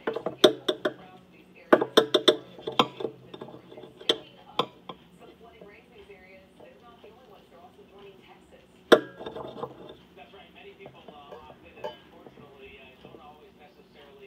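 Kitchen knife chopping a cooked egg patty on a cutting board: quick clusters of sharp taps about a second and two seconds in, then a few single taps, the loudest near the nine-second mark, over a faint murmur of voices.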